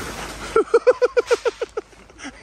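A brief rush of noise, then a man laughing in quick bursts, about eight a second, that fade out near the end.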